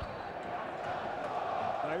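Football stadium crowd noise heard through a TV broadcast: a steady din that swells slightly, with a man's voice coming in near the end.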